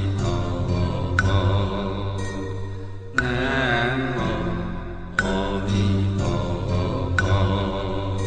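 Buddhist devotional chant sung over a steady musical backing, with a sharp percussive strike about every two seconds.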